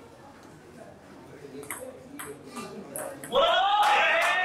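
Celluloid-type table tennis ball clicking off bats and table in a short rally, several quick sharp hits, then a loud man's shout near the end.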